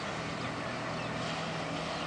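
A jet ski's engine droning steadily over a haze of steady noise.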